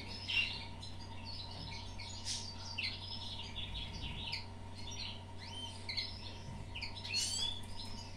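Small songbirds twittering: a busy stream of short, high chirps and trills.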